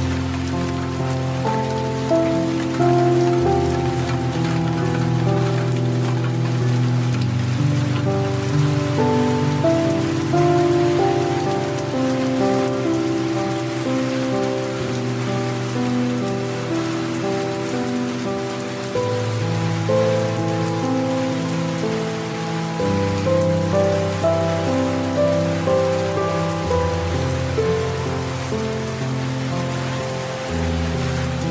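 Slow, calm instrumental music of held notes over a low bass line that changes every few seconds, mixed with steady rain.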